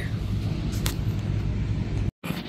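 Steady low hum of a store's background noise, with a couple of faint light ticks or rustles about three-quarters of a second in.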